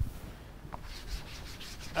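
Writing on a lecture board, heard as quick scratchy strokes in a steady run that starts about halfway through.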